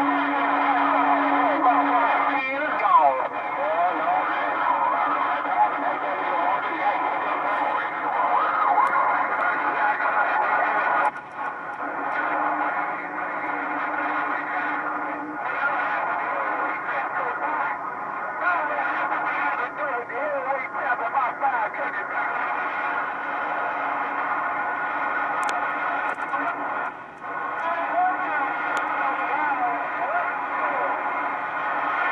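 HR2510 ten-meter radio receiving on the 27 MHz band as it is tuned across frequencies: steady band hiss filled with overlapping, garbled voices of distant stations and whistling tones. A steady low hum-like tone sounds in the first couple of seconds and again for a few seconds midway, and the signal drops out briefly twice.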